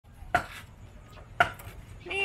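Two sharp knocks about a second apart, each with a brief ring, like something hard struck or set down.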